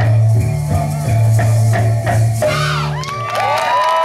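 A live band with a bass line and strummed strings plays the closing bars of a song and stops about two and a half seconds in. The crowd then breaks into cheering and whoops.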